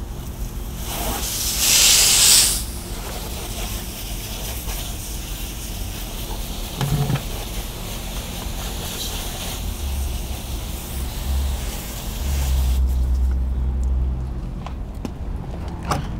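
Garden hose spray nozzle rinsing a car's wheel, tyre and wheel well: a steady hiss of water spray, loudest for a second or so near the start. The spray stops about three seconds before the end, leaving a low rumble.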